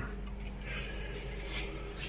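A steady low hum, with a couple of faint rustles.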